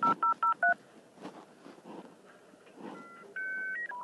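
Telephone keypad dialing tones: four quick two-note beeps in the first second. After a pause, a few more electronic phone beeps and a steadier tone follow near the end.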